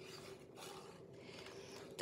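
Faint scratchy rubbing of small scissors cutting a nail slider decal out of its sheet, louder around half a second to a second in.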